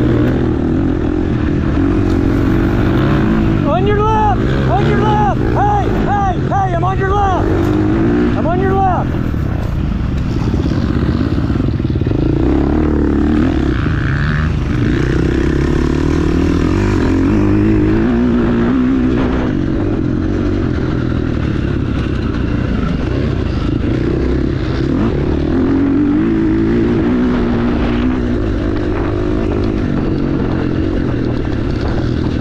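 Off-road dirt bike engine running hard on a trail, heard from the rider's own bike, with heavy rumble over the microphone. Between about four and nine seconds in, the throttle is worked repeatedly, the engine note rising and falling about seven times in quick succession.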